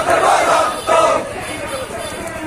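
A large crowd of marching men shouting protest slogans in unison: two loud shouts in the first second, then a lower hubbub of voices.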